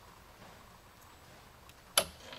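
Quiet background, then near the end a single sharp click: the Johnson Controls A419 temperature controller's relay opening as the controller cuts out at 80°F.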